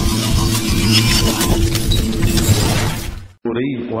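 A TV news channel's logo sting: music with a dense run of sharp, crashing hits, which cuts off abruptly a little over three seconds in. Near the end a man's voice begins over a microphone.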